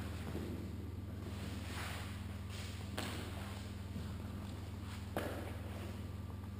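Soft rustles and light thumps of people settling on a gym mat and handling sparring gear, with two short sharp knocks about three and five seconds in, over a steady low hum.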